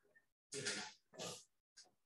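Two short, harsh throat-and-breath noises from a person, about half a second apart, with a faint third near the end.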